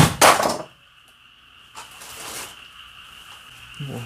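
A sharp knock right at the start, with a burst of loud rustling, then a shorter rustle about two seconds in. A steady chirring of insects runs underneath.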